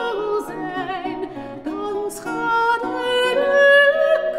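Mezzo-soprano singing a Dutch song with vibrato, accompanied by a plucked lute.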